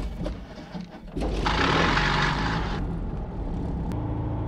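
Van's RV-8's 180 hp four-cylinder Lycoming engine and propeller running steadily at low power, growing louder about a second in. A hiss sits over it for about a second in the middle.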